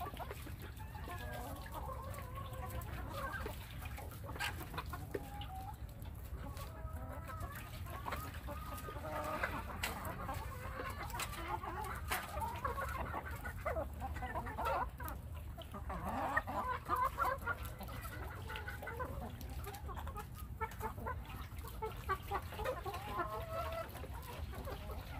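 A backyard flock of domestic hens clucking: many short overlapping calls throughout, busier around the middle of the stretch, over a steady low background hum.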